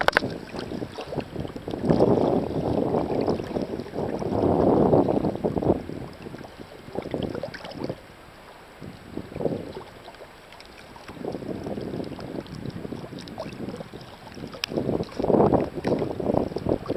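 Sea water sloshing and splashing around a camera held at the surface by a swimmer in choppy water, coming in irregular surges every two to three seconds, with wind buffeting the microphone.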